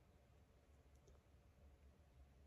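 Near silence with a few faint, short mouth clicks about a second in, as lips work on a popsicle stick.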